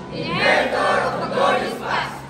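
A group of about twenty teenage voices reciting a text loudly in unison as a choral reading, one emphatic phrase that starts just after the beginning and runs almost to the end.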